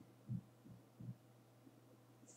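Four soft, low thumps in quick succession, about three a second, then nothing but a steady low electrical hum. They sound like handling bumps picked up by a microphone right next to the person.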